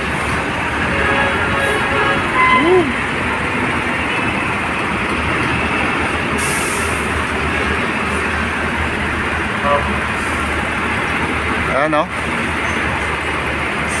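Steady diesel running and rolling noise of a slow convoy of six-wheeled concrete mixer trucks passing close by, with a short sharp hiss of air brakes about six and a half seconds in.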